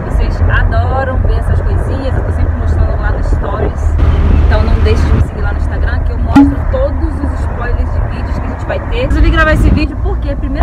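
Steady low rumble of a car's cabin from the back seat, under a woman talking; a single short click about six seconds in.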